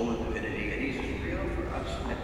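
A person's voice speaking, indistinct and echoing in a large church, with a wavering pitch.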